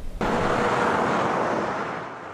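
Freeway traffic: a steady rush of many cars and trucks passing, cutting in abruptly just after the start and slowly easing off.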